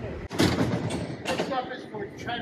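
A San Francisco cable car on the move, with a sharp knock about half a second in and another a second later, under voices.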